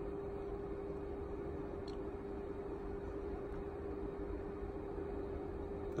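Steady room noise: an even hiss with a steady mid-pitched hum underneath.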